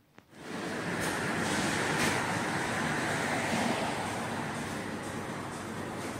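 A steady rushing noise that cuts in suddenly just after the start and holds even throughout.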